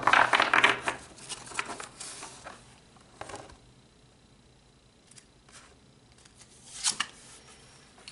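A deck of oracle cards being shuffled by hand: a quick run of papery flicks and slaps for about two seconds that trails off, then quiet, then a short card rustle near the end as a card is pulled from the deck.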